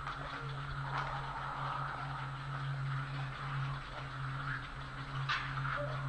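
Steady low hum and faint outdoor background noise picked up by a nest webcam's microphone, with one short sharp sound about five seconds in.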